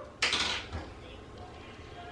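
A small plastic baby-food cup being opened and handled with a spoon: one short scraping rustle about a quarter second in, then faint handling sounds.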